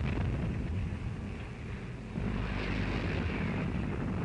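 Propeller aircraft engines droning over a dense low rumble, on a worn 1940s film soundtrack; the drone swells louder about two seconds in.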